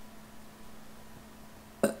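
Quiet room tone with a faint steady hum, then near the end a single short, sharp hiccup from the woman.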